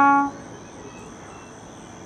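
A trombone's held note cuts off about a third of a second in, leaving a rest in the playing. Through the rest only a faint, steady, high-pitched tone remains.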